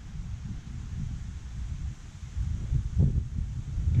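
Wind buffeting the microphone outdoors: a low, uneven rumble that gusts louder about three seconds in.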